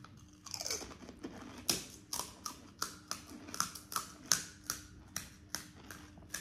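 Crisp fried pani puri shells crunched between the teeth while chewing, a steady run of crunches about two or three a second, starting about half a second in.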